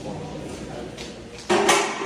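A sudden, loud, short metallic rattle about one and a half seconds in, as a part of a large milling machine is handled, with faint talk before it.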